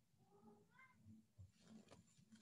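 A faint, short meow from a pet cat, rising in pitch toward its end, in a near-silent room.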